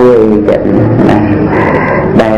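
A man's voice chanting in a sung melody, holding long notes that slide in pitch.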